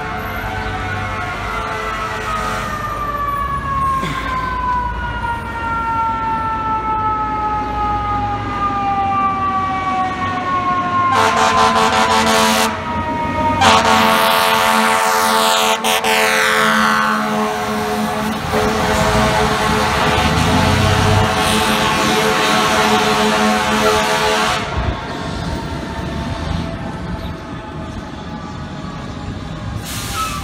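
FDNY heavy rescue truck's siren winding down in one long, slow fall of pitch, then its air horn blasting almost continuously for over ten seconds, with a short break, as the truck approaches and passes, before the sound drops away to engine and traffic noise.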